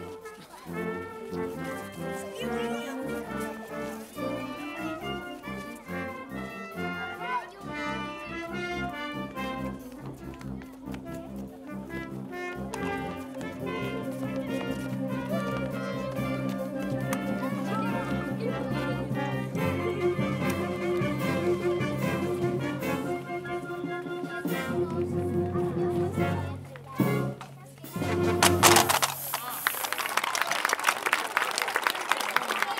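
Live wind band, brass to the fore, playing a piece that moves into long held chords and grows louder toward its close. Audience applause breaks out near the end.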